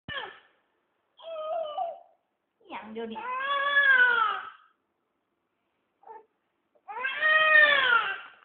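A baby crying in pitched calls that rise and fall, two long ones about three and seven seconds in, with shorter cries before them.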